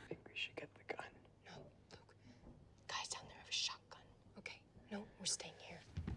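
Faint whispered dialogue from a film soundtrack: hushed voices with sharp hissing consonants, coming and going in short phrases.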